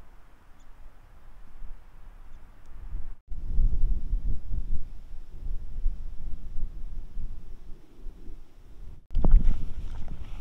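Wind buffeting the microphone: a low rumble with no distinct sounds in it, fairly faint at first and much louder from about three seconds in.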